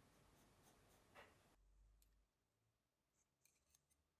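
Near silence. A pencil scratches faintly on paper during the first second and a half, then stops abruptly. A few faint light clicks come near the end.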